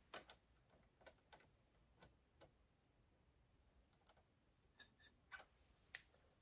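Near silence broken by about a dozen faint, scattered small clicks and taps from hands handling parts at a reloading press, the loudest just at the start.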